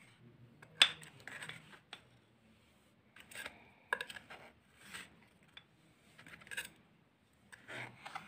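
A steel knife blade scraping and clicking against a stainless steel plate as squares of coconut barfi are pried up and slid off, in short scattered strokes, the sharpest click about a second in.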